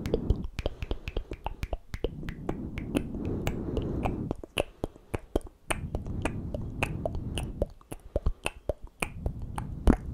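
Close-miked ASMR mouth sounds: a quick, irregular run of wet tongue and lip clicks, several a second, between stretches of soft low noise.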